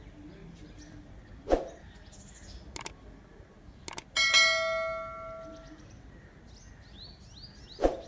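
A single bell-like ding about four seconds in, ringing out and fading over a second or so, amid several sharp clicks; faint high chirps near the end.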